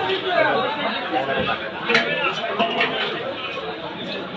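Several people talking at once in a busy market: overlapping chatter, with one sharp click about two seconds in.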